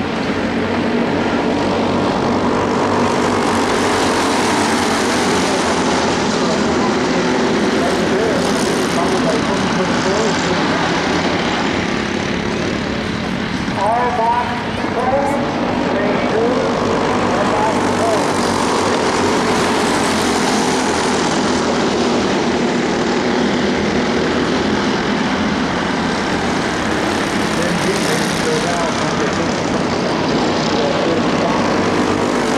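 A pack of Jr 1 class dirt oval racing kart engines running hard together, a steady buzzing drone that swells and fades every few seconds as the karts circle the track.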